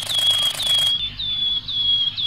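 Title-sequence sound effects: rapid clicking, about ten clicks a second, that stops abruptly about a second in. Under it a short, high, bird-like chirp repeats about twice a second, over a faint steady low hum.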